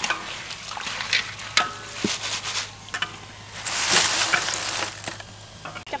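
Hot oil sizzling in a wok as banana slices deep-fry, with scattered light clicks and knocks; the sizzle swells louder about four seconds in.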